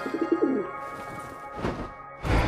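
A cartoon giant pigeon creature cooing: a quick warbling coo in the first half second, over soft background music.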